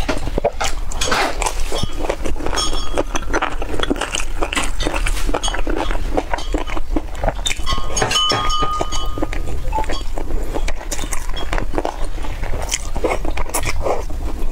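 Close-miked chewing and wet mouth sounds: many small clicks and smacks as curried mutton and rice are bitten and chewed, over a steady low hum.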